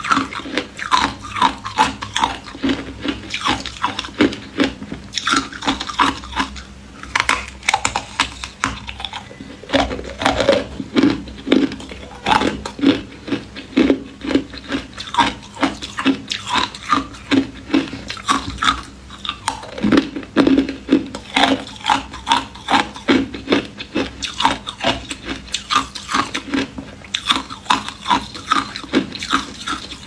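Ice being bitten and chewed, a rapid run of sharp crunches about two to three a second, with a few brief pauses.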